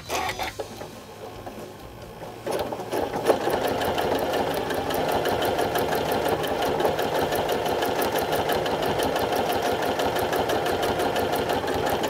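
Janome Continental M8 sewing machine quilting under its Accurate Stitch Regulator: it starts stitching slowly on the start button, then about two and a half seconds in it speeds up and runs louder and steady as the fabric is moved, the regulator matching the stitch speed to the fabric's movement.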